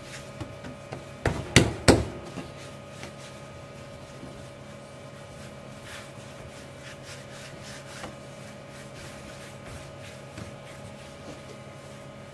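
Hands rolling strands of yeast dough under the palms on a floured wooden bench: soft rubbing with small ticks. Two or three sharp knocks come about a second and a half in, and a faint steady hum runs underneath.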